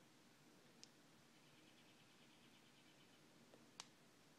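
Near silence: room tone, with a faint click about a second in, a faint rapid ticking in the middle, and another small click near the end.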